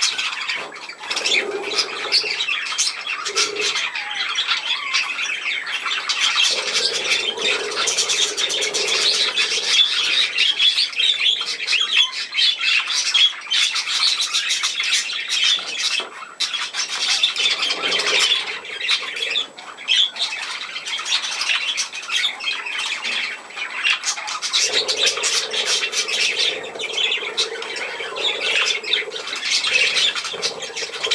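Many budgerigars chattering and squawking continuously, a dense, unbroken twitter.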